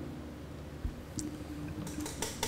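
Quiet room tone with a faint steady low hum and one soft thump just under a second in.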